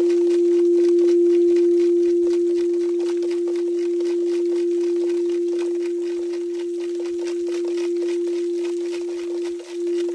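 A singing bowl sounding one steady, sustained tone, beginning to waver in slow pulses near the end.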